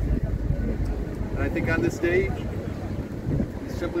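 Outdoor speech with steady wind rumble on the microphone, and a man's voice speaking in short phrases.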